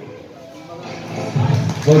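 A brief lull in the game commentary with faint background ambience. A man's announcing voice comes back in near the end.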